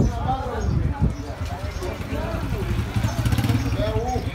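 Busy street ambience: several people talking in the background over a steady low rumble.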